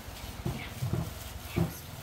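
Three short, low grunt-like animal sounds about half a second apart.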